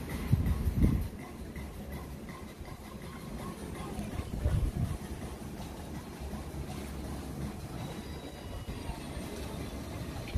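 Low rumbling noise, swelling louder twice: briefly about a second in, and again around four and a half seconds.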